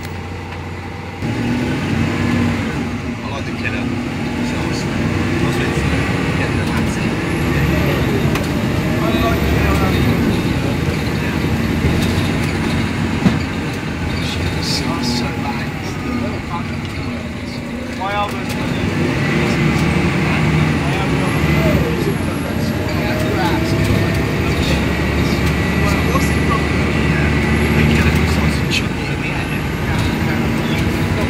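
Plaxton Centro bus's engine and drivetrain heard from inside the passenger saloon, pulling away about a second in and then running steadily under load, its pitch stepping up and down several times as it changes gear.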